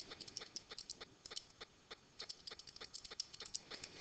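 Faint, quick clicking of calculator keys being pressed, several clicks a second in irregular runs with short pauses, as a multiplication is keyed in.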